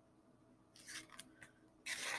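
Mostly quiet, with a few faint rustles of a picture book's paper pages being handled, then a louder crisp rustle of a page being turned near the end.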